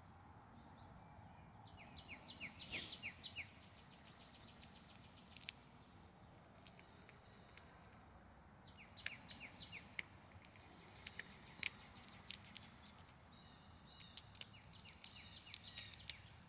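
A small songbird's quick trill of short falling notes, heard faintly three times, over scattered sharp clicks of a chipmunk cracking open peanut shells.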